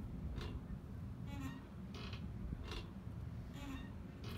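Rope hammock creaking faintly as it sways: five short creaks, roughly one a second.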